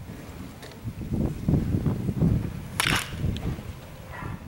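Baseball bat striking a ball: one sharp crack about three seconds in, over a low rumble.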